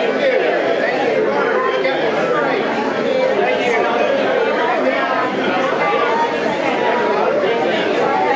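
Many people talking at once: a steady crowd chatter of overlapping voices, none of them clear enough to make out.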